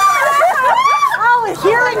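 Several people's high-pitched cries and exclamations as buckets of ice water are dumped over them, the shock of the cold water, with overlapping voices throughout.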